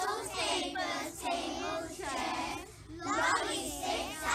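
A group of young children singing together in unison, in phrases of held notes with short breaks between them.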